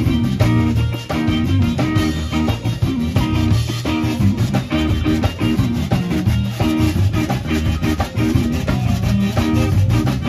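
Live zydeco band playing an instrumental passage: electric guitar and electric bass over a drum kit with a steady dance beat, with a button accordion on stage.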